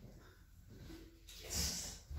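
Quiet room, with a short hissing breath near the end.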